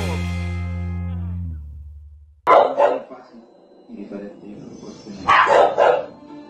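The closing chord of an upbeat outro track rings and fades out over about two seconds. Then a dog barks loudly in two short bouts, about two and a half and five seconds in.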